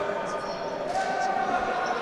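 A group of basketball players clapping and cheering, with a steady mix of hand claps and voices.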